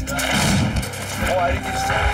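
Combat soundtrack of a war-film trailer: a man's shout and gunfire, with a held music tone coming in about one and a half seconds in.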